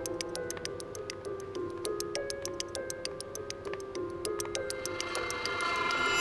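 Background score with a fast, steady ticking pulse over held synthesizer notes that step up and down in pitch, growing fuller near the end.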